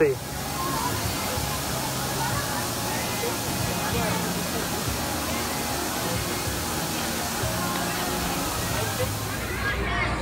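A steady rushing noise, like running water, with faint crowd chatter beneath it; it starts and stops abruptly.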